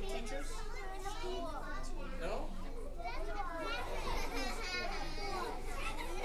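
A crowd of young children talking and calling out at once, many overlapping voices in a steady hubbub.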